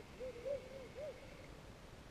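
A bird calling: a quick run of four or five short hooting notes, each rising and falling in pitch, all within the first second or so.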